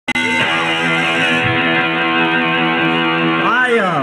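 Electric guitar chord held and left ringing, a steady sustained tone. A man's voice starts talking near the end.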